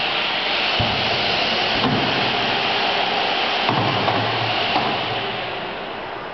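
Automatic carousel screen-printing press running: a steady hiss of air with a few knocks and clunks from its moving parts. The hiss eases off near the end.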